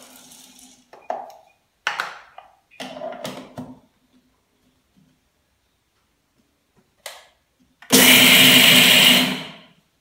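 Preethi mixer grinder briefly running on its steel jar, one loud burst of about a second and a half near the end, dry-grinding roasted gram (pottukadalai). It follows a few short knocks of the jar and lid being handled.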